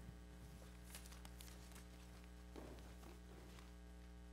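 Near silence: a steady low electrical hum from the sound system, with a few faint clicks and rustles from a handheld microphone being passed from hand to hand.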